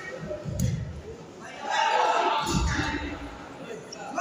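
A voice calling out, echoing in a large sports hall, with two dull low thumps, about half a second in and about two and a half seconds in.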